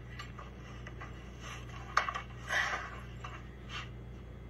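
A sharp knock about two seconds in, followed by brief scraping and scuffing sounds, over a low steady hum.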